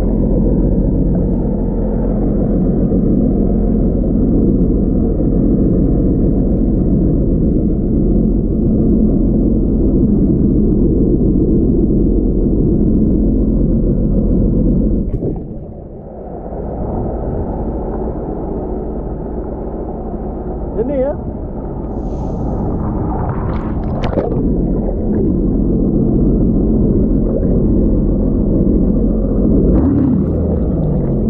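Muffled, steady rumble of a Sea-Doo jet ski engine, heard through a camera held underwater. It drops away briefly about halfway through and then returns.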